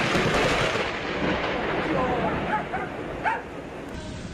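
Heavy rain pouring through trees, loudest in the first second or two and then easing. A few short yelps or calls sound over it about two to three seconds in.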